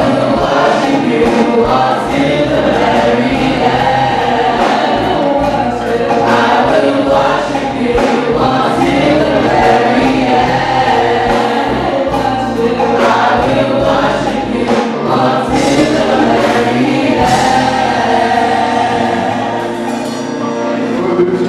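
Church choir singing a gospel hymn, amplified through microphones, loud and continuous.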